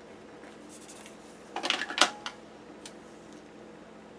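Tape and paper being handled on a planner page: a short crackly rustle about a second and a half in that ends in a sharp click, against a quiet room with a faint hum.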